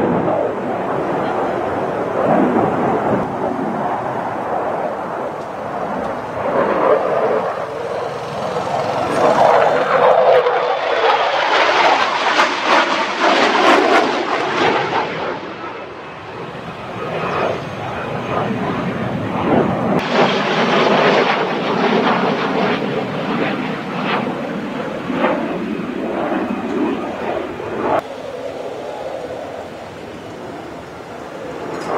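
Twin-engine F/A-18D Hornet jet fighter flying a display pass, its jet noise swelling and fading twice with a crackling edge. Voices can be heard underneath.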